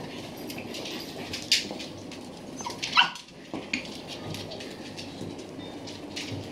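Small dogs playing, with one short, sharp bark from a small dog about three seconds in over a steady room background with scattered light clicks.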